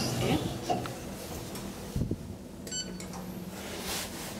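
Short electronic beep from an ITK elevator's car button panel as a floor button is pressed, about two-thirds of the way in. A dull thump comes about half a second before it.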